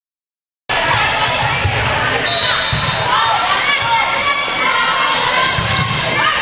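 Volleyball game in a large echoing gym: players and spectators shouting and calling out over one another, with irregular thuds of ball contacts and feet on the court. The sound cuts in suddenly, a little under a second in, after silence.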